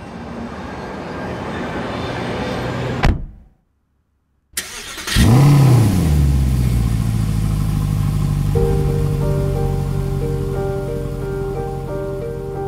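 A rising whoosh that ends in a sharp hit about three seconds in, then a second of silence, then a Mercedes-AMG car's engine starting: a brief rev flare that rises and falls and settles into a steady low idle. Pulsing music notes come in over the idle about halfway through.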